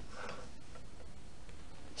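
Quiet, steady room noise, with one faint short sound about a quarter of a second in.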